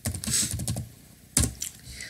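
Typing on a computer keyboard: a quick run of keystrokes, then one louder key stroke about a second and a half in.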